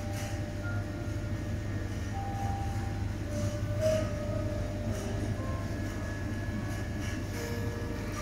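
Steady low hum of refrigerated display freezers and supermarket background noise, with faint short tones scattered through it.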